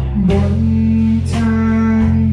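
A live pop band playing: keyboard, guitar and bass holding long low notes under drums, with a woman singing a sustained note into a microphone.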